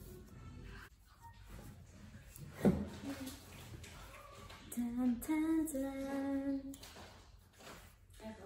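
A woman humming a few held notes of a tune, after a single brief thump a little under three seconds in.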